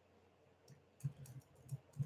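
Near silence broken by a few faint, short clicks from computer use, scattered through the second half.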